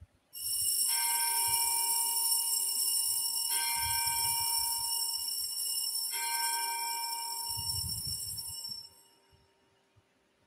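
Altar bells rung at the elevation of the host during the consecration. They are struck three times, about two and a half seconds apart, over a continuous shimmering jingle, and the ringing dies away near the end.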